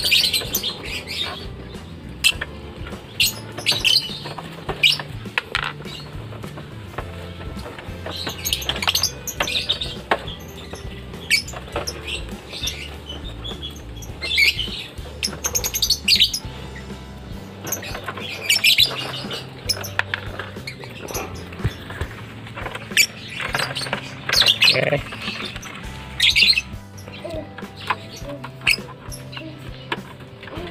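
Lovebirds squawking in short, shrill bursts again and again as they are handled and caged, over steady background music with a low beat.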